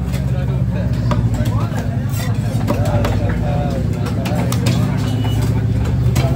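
A cleaver chops stingray flesh on a wooden block with several sharp knocks. Under it runs a steady low engine hum, with voices talking in the background.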